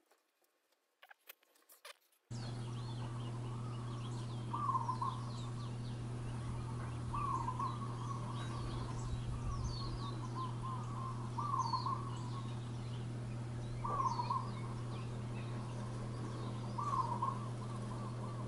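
Faint rustling for about two seconds, then birds outdoors: a short call repeating about every two to three seconds among higher chirps, over a steady low hum.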